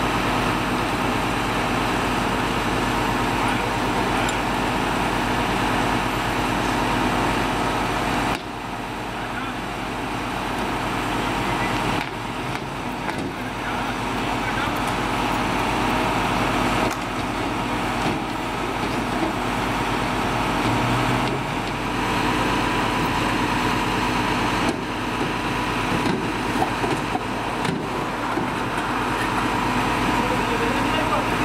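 A machine running steadily, like an engine idling, with a fine rapid low pulsing and a faint steady hum; faint voices are mixed in. The level steps down abruptly several times where the footage is cut.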